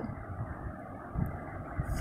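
Steady low background rumble with a faint hiss, and two soft low thumps, one just after a second in and one near the end.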